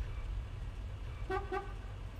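Steady low rumble of a car interior, with two short horn toots about a quarter of a second apart near the end.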